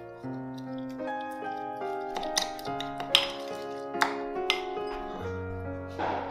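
Soft background music with held notes, over which a spoon clinks sharply against a ceramic bowl about four times while a thick sauce is stirred. The clinks are loudest about three and four seconds in.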